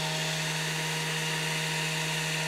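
Steady electrical hum and thin whine with hiss from the powered FuG 16 radio equipment on its test panel, running unchanged.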